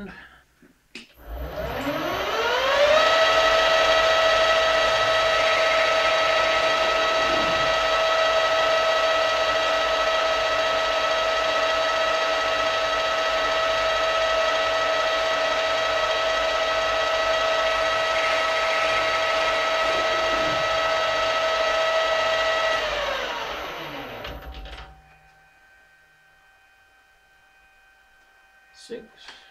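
Small metal lathe running: a high whine from the spindle drive rises in pitch over about two seconds as it spins up. It holds steady for about twenty seconds, then falls away as the spindle winds down and stops.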